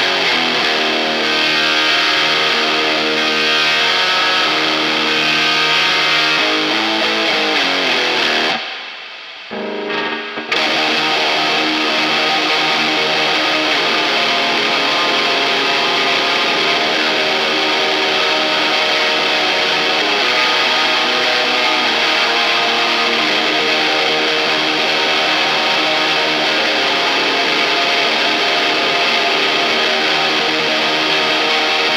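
Electric guitar through a Hotone Mojo Attack pedalboard amp with gain, treble and mids all the way up, bass all the way down, boost and reverb on, giving a dense, bright high-gain distortion for a black-metal tone. The boost and maxed gain add a lot of extra noise. The playing cuts out briefly about nine seconds in.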